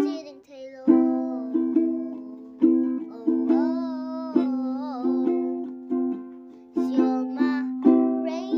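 Ukulele strummed in chords, each strum ringing out and fading, with a young girl singing along; her voice wavers on a held note about halfway through.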